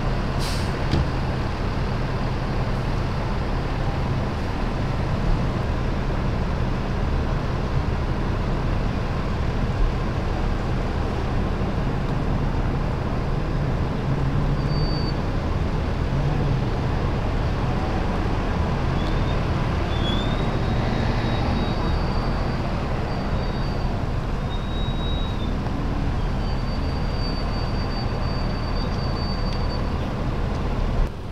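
Steady drone of an idling diesel fire engine, a constant low rumble under a broad noise, with faint high-pitched whistling tones coming and going in the second half.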